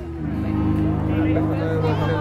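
Voices talking over a steady low hum, right after the acoustic guitar song has stopped.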